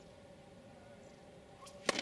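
A tennis racket strikes the ball once near the end, a single sharp hit, just after a faint tick. Before it, only a faint steady hum.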